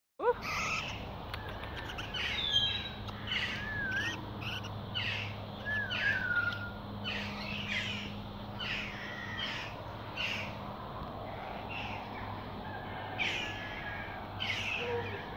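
Birds calling over and over: short harsh calls about every half second to a second, mixed with a few whistled notes that glide up and down.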